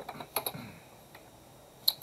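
A few computer keyboard key clicks in quick succession, then another click near the end, as a name is finished being typed and entered into a dialog box.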